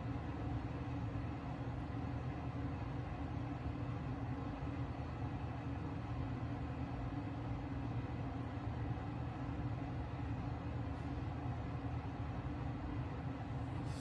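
Steady low rumble with a faint hum, even throughout, with no distinct events.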